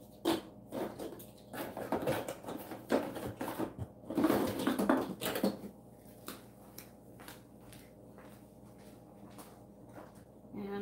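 Handling noise on a worktable: a scattered series of light knocks, taps and rustles from objects being picked up and set down, busiest about four to five and a half seconds in, then mostly quiet.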